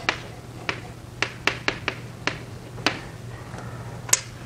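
Chalk tapping and clicking on a chalkboard as block capital letters are written: about eight sharp, irregular taps over a steady low electrical hum.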